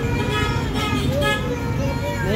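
Steady low rumble of street traffic, with voices over it.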